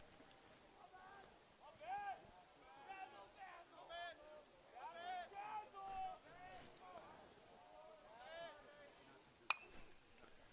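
Faint voices chattering in the background, then near the end a single sharp metallic ping of a metal baseball bat fouling off a pitch, with a short ring after it.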